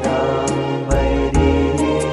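Background hymn music: a choir singing over instrumental backing, with the chords changing about every half second.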